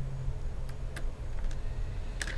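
A few faint clicks from a small tri-wing screwdriver driving a battery screw into an open MacBook Pro, over a low hum that stops about half a second in.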